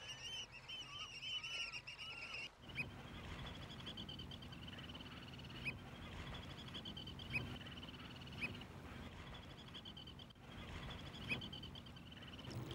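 A flock of seabirds calling: a fast, continuous chattering trill with a few sharp single chirps over it, fairly faint.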